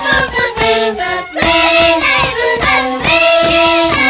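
Andean carnival music: a group of high-pitched women's voices singing over long wooden flutes holding and changing notes, with a steady beat underneath. Near the end the voices slide downward together.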